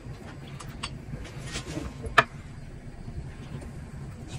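Small clicks and taps from hands handling sticky honey-glazed pastries and almond flakes, with one sharp click a little past halfway, over a steady low hum.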